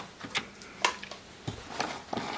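Several light, sharp clicks and taps, spaced irregularly about half a second apart, from small objects being handled, over a faint steady hum.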